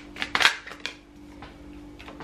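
A deck of cards being shuffled by hand: a few sharp flicks and slaps of the cards in the first second, then quieter handling.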